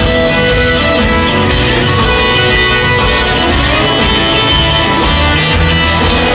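Live band playing, with a Telecaster-style electric guitar prominent over drums and bass.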